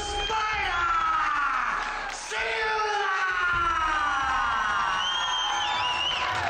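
Ring announcer's long, drawn-out bellowed call of the result, its pitch falling on the held syllables, over a cheering crowd.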